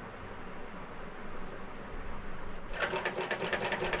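Domestic sewing machine starting to stitch about two and a half seconds in, after a quiet stretch: a rapid, even run of needle and mechanism clicks.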